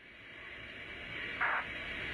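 Radio static hiss fading in and growing louder, with a short burst about one and a half seconds in.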